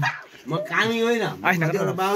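A man's voice talking, in drawn-out syllables that rise and fall in pitch.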